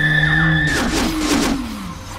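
Horror film soundtrack: a shrill, sustained screeching tone over a low drone that breaks off partway through, followed by a cluster of sliding tones and a downward sweep that fades near the end.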